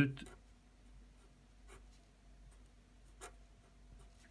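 Faber-Castell pen writing a formula on squared paper: faint strokes of the tip, with a few short, slightly louder strokes.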